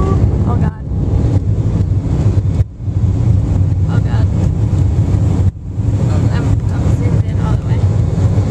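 Loud, steady low rumble of a jet airliner's engines heard inside the cabin, with wind buffeting the microphone. It drops out briefly three times.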